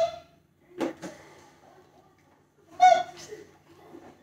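A toddler's high-pitched vocal sounds: a short one at the start and a louder call about three seconds in. A single short knock comes about a second in.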